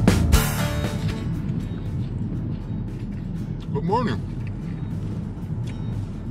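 Steady low rumble of road and engine noise heard from inside a moving car's cabin, after guitar music cuts off about a second in. A brief voice sound comes about four seconds in.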